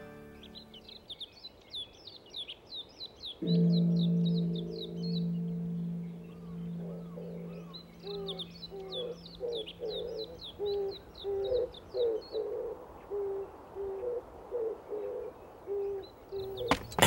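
Forest birdsong of quick, repeated high chirps, with a lower call repeating about once a second from partway through. A low sustained tone comes in sharply about three and a half seconds in and slowly fades.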